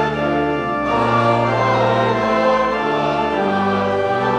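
Church choir singing, holding long chords that change about once a second over a steady low accompaniment.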